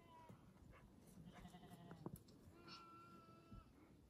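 Baby goat bleating faintly, twice: a wavering call about a second in and a longer, steadier one near the end.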